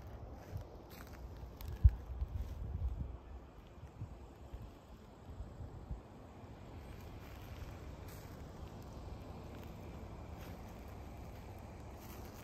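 Footsteps and low handling bumps of a handheld phone being carried over dry ground, the loudest thump about two seconds in. From about six seconds in there is a steady faint low rumble.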